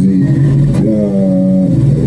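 A person speaking Swahili in a muffled, bass-heavy voice, stretching one syllable for most of a second.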